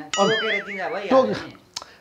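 A bright metallic ding rings for about a second with a wobbling pitch, over a man's speech.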